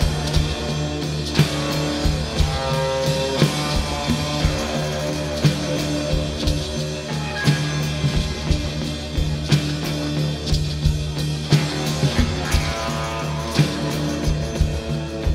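A rock band playing, with electric guitar and a drum kit over a sustained low note, the drums striking about once a second.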